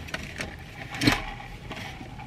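Small handling noises of a plastic iced-coffee cup and straw being picked up, with one louder brief rustle or knock about a second in.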